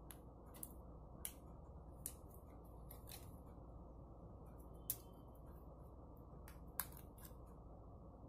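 Small scissors snipping the edge of a thin, lightweight painted plastic mini 4WD body shell: a dozen or so faint, sharp, irregular snips, two of them louder about five and seven seconds in.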